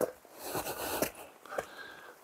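Faint sounds of someone climbing over rock: scuffs, a couple of short clicks and a soft breath-like rush.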